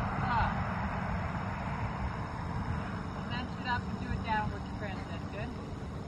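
Low, steady wind rumble on the microphone, with faint distant voices a few times.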